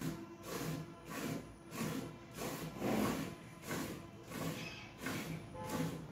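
Streams of milk squirting into a metal bucket as a water buffalo is milked by hand, one hissing squirt after another in a steady rhythm, a little under two a second.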